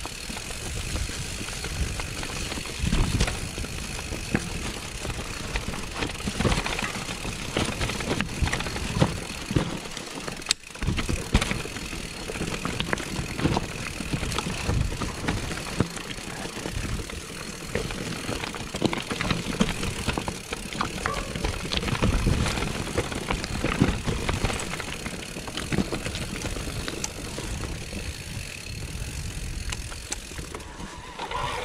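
Mountain bike descending a rough woodland singletrack: a steady rumble of the tyres over dirt and stones, with many short knocks and rattles from the bike.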